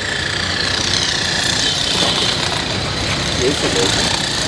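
Steady motor-vehicle engine noise with a low hum, and faint voices about three seconds in.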